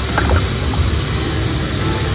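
Video slot machine's game music and sounds over the steady low hum of a casino floor, with a few short chime tones just after the start.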